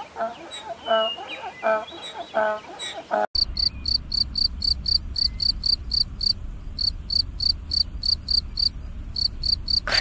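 A donkey braying in repeated pitched calls, cut off about a third of the way in. Then a field cricket chirping: a steady train of high chirps, about three a second.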